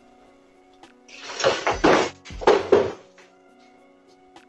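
Two loud scraping bursts, each under a second long, from a wooden chair moving across the floor, over steady background music.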